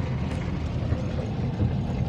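Steady low rumble of a car driving, heard from inside the cabin, its tyres running through muddy floodwater covering the road.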